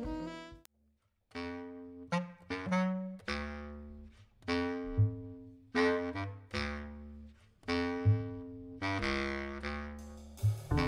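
Live small jazz band: after a brief gap about a second in, a run of accented, held ensemble notes, each dying away, with a clarinet, double bass, archtop electric guitar and drums.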